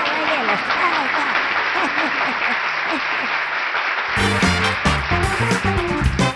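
Audience laughter and applause after a joke's punchline. About four seconds in, it cuts to the show's theme music.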